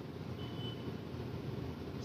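Steady low background hum of the room, with one brief faint high beep about half a second in.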